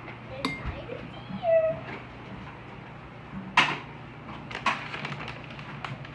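A metal spoon clinking against a ceramic bowl of pizza sauce: a light click early on and two sharper clinks a little past the middle. A short high-pitched vocal sound comes about a second and a half in.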